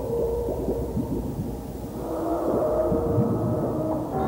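Ambient soundtrack music: held low tones under many short swooping glides in pitch, like whale calls. More sustained tones enter about halfway through.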